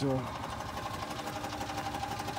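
North Star 31-gallon sprayer's 12-volt electric pump running with a rapid, even chatter over a steady hum.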